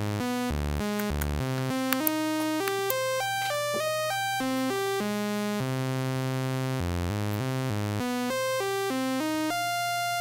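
Computer-generated random melody from a Max patch: single synthesized notes change pitch about three times a second at an even pace, wandering within a harmonic minor scale and leaping between low and high octaves.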